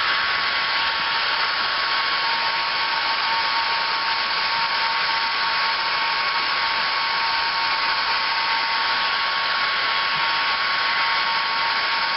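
Two Conair hand-held hair dryers running steadily, blowing hot air onto a plastic bumper cover to warm it: an even rushing of air with two steady whines.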